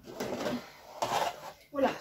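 Cardboard advent calendar box picked up and handled, a rustling scrape of cardboard for about a second and a half, with a spoken word near the end.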